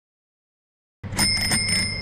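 Bicycle bell rung in three quick strikes about a second in, its ring fading over a low steady hum.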